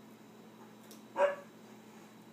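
A single short, high-pitched yelp about a second in, loud against a quiet room.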